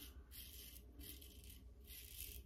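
Gillette Super Speed safety razor with a Wizamet blade scraping through lathered stubble on the neck: about three short, faint strokes, each a scratchy rasp with a brief pause between.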